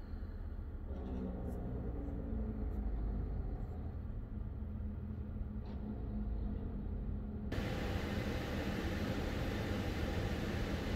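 Car interior noise: the vehicle's engine running with a low steady rumble. About seven and a half seconds in, a steady hiss joins the rumble.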